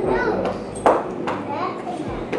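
Young children's voices talking, high-pitched, with a sharp click or knock a little under a second in.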